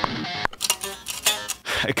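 Playback of a double-tracked, heavily distorted electric guitar riff recorded through a Neural DSP Nano Cortex amp model. A sustained chord cuts off about half a second in, then a choppy fill follows in which the two takes play different notes, so they sound as a harmony.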